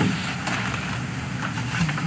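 A steady low hum of room noise.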